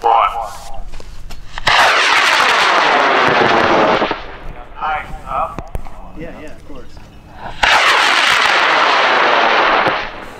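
Two high-power rocket motors burning at lift-off. Each is loud and steady for about two and a half seconds, starting abruptly and cutting off sharply at burnout, and its sound sweeps downward as the rocket climbs away. Brief voices come between the two.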